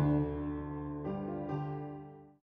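Piano playing the closing chords of a piece: a low chord struck right at the start and another about a second in, both left to ring and fade away.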